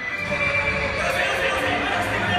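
Horse whinny sound effect played over an arena's loudspeaker system.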